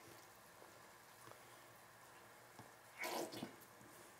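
Quiet kitchen with ketchup being squeezed from a plastic squeeze bottle into a pan, with a short wet squelch about three seconds in.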